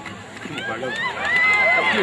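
Spectators at a football game cheering and yelling together as a play unfolds. The noise swells about half a second in, with one long, high-pitched shout held in the middle.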